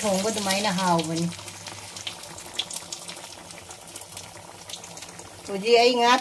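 Fish curry simmering in a pan just after its hot tempering has gone in: a soft, steady hiss with faint scattered pops, between a voice at the start and near the end.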